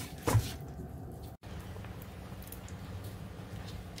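A single brief wet knock as the cooked zongzi are handled in their steel pot of cooking water, then a steady low hum.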